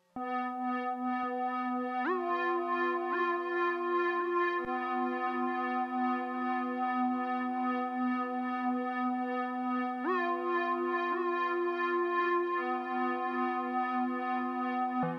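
DIY Arduino-controlled cassette tape synth playing a sustained FM string tone that starts abruptly. New notes come in about two and three seconds in, and again about ten and eleven seconds in, each sliding up in pitch as the tape speed changes.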